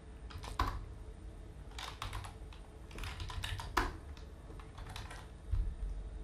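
Computer keyboard typing: scattered, irregular keystrokes as a line of CSS code is typed out.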